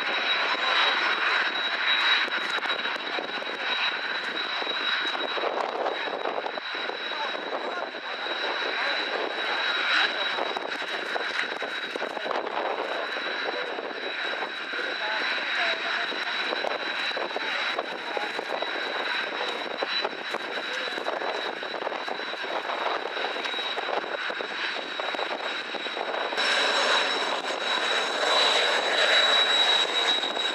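Kawasaki T-4 jet trainers' twin turbofan engines running as they taxi, a steady high whine over a rushing roar. Near the end it grows louder and brighter as one taxis close by.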